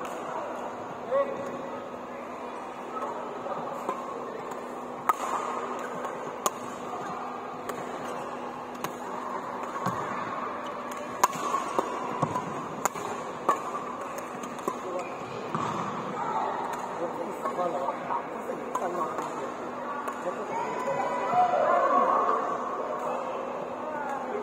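Badminton rally: sharp cracks of rackets striking a shuttlecock every second or so, over echoing chatter in a large sports hall, with louder voices near the end.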